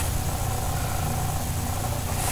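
Steady low background hum with an even hiss above it, without speech; a brief click right at the start.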